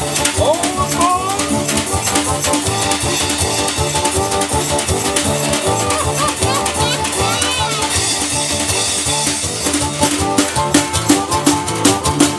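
Live acoustic band playing an instrumental break: a harmonica solo with notes bending up and down over strummed acoustic guitar and a steady drum-kit beat.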